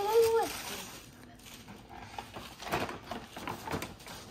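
A child's brief voiced exclamation, then rustling and crinkling of tissue paper and a cardboard-and-plastic toy box being handled, with a few light knocks.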